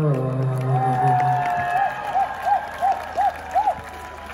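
Live electronic rock band finishing a song: a low held note fades out, then a higher tone holds and swoops up and down about six times in quick succession, over faint crowd noise.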